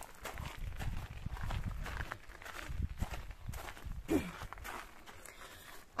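Footsteps on gravel, a person walking with a low rumble beneath the steps, the steps thinning out in the last couple of seconds.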